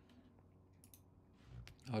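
A few faint, sharp clicks about a second in, from working a computer's mouse and keys.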